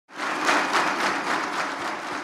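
Applause: many people clapping together, a dense patter of hand claps that starts right away and begins to ease off near the end.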